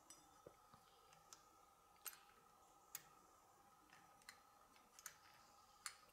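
Faint, irregular light metal clicks, about seven in six seconds, as the tapered washers on the saw-disc arbor are turned by hand against each other; otherwise near silence with a faint steady hum.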